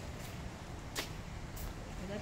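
Steady low outdoor background rumble, with one sharp click about halfway through and a fainter one shortly after.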